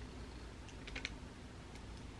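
A few faint, light clicks and paper handling from a paper receipt held and shifted in the hands, over quiet room tone.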